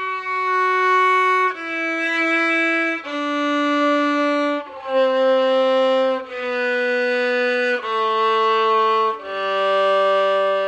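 Violin playing the G major scale downward in first position: seven slow, separately bowed notes of about a second and a half each, stepping down from F sharp to the open G string.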